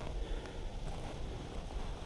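Faint low rumble of wind on the microphone, with no distinct events.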